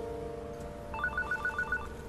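Electronic telephone ringing: a fast warbling trill between two pitches, lasting about a second and starting about a second in. It sounds over the fading tail of a held music note.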